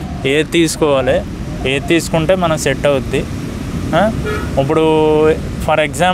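Speech: a man talking.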